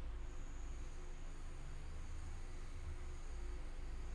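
Quiet room tone: a steady low hum with faint high-pitched whines that begin shortly after the start.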